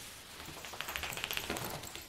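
A quick flurry of small clicks and crackles in the second half.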